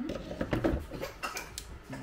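Metal espresso portafilter knocking and scraping against the machine's group head as it is fitted and twisted into place, with several sharp clicks.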